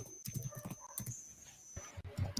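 Faint, irregular clicking from someone working at a computer, several clicks a second, over a thin steady high-pitched electrical whine.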